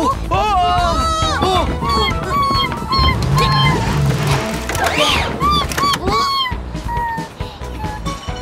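Cartoon background music with high-pitched, gliding character voice sounds over it, mostly wordless exclamations, running throughout.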